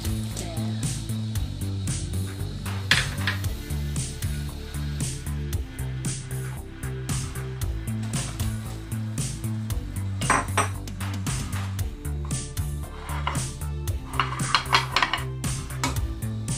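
Bowls clinking and knocking against a stainless steel pot as ingredients are tipped into boiling water, with a few louder knocks about three seconds in, around ten seconds and near the end, over steady background music.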